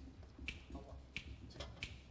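Finger snaps at a steady, moderate tempo, three in a row about two-thirds of a second apart: a count-off setting the tempo before the jazz band comes in.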